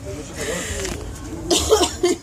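A person coughing, a short breathy burst followed about a second later by a louder cough, with a little voice around it.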